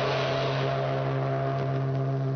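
Cartoon soundtrack: a sudden crash opens one loud, low note that is held perfectly steady under a hissing, cymbal-like wash.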